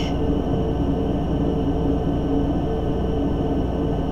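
A steady, even drone with a few faint held tones and no beat or breaks.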